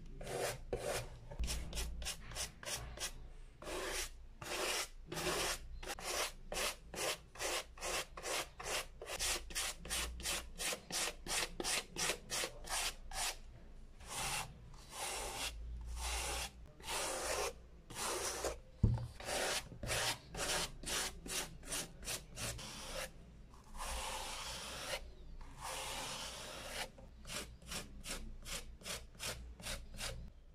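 Stiff-bristled brush scrubbed back and forth over a sneaker's suede upper in quick, even strokes, about two a second, with two longer, slower strokes near the end. A single low knock comes about two-thirds of the way through.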